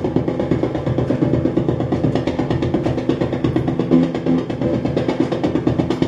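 Novation Supernova II synthesizer running its arpeggiator: a fast, even stream of short, percussive repeated notes over a few sustained pitches.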